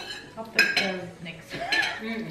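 Cutlery clinking against plates and dishes during a meal, a few sharp clinks, with voices talking.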